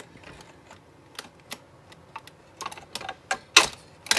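Scattered light clicks and taps of a large scale-model car's chassis being handled and dropped into its body, with one sharper knock about three and a half seconds in.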